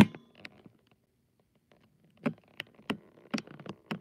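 Handling noise from a phone camera being moved and set in place: a sharp click at the start, then after a pause a scatter of light knocks and clicks through the second half.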